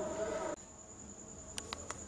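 A faint, steady high-pitched tone runs throughout. A voice trails off in the first half-second and is cut off suddenly, and three quick clicks follow near the end.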